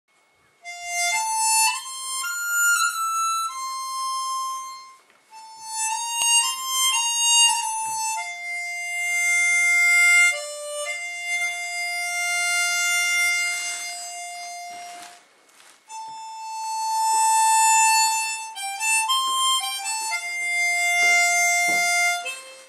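Solo harmonica playing a melody one note at a time, in phrases with short breaks between them.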